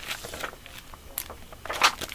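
Clear plastic packets of self-adhesive gem accents rustling and crinkling in the hands, with a few short crackles and a louder crinkle near the end.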